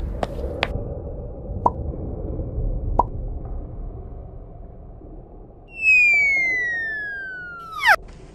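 Cave ambience sound effect: a low rumble with water drips plopping several times. Then, from about six seconds in, a cartoon falling whistle glides steadily down in pitch for about two seconds and ends in a loud, sharp sweep near the end.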